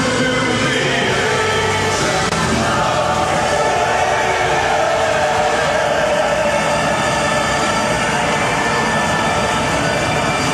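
The massed voices of a huge congregation in worship, a dense, steady wall of many voices without a break.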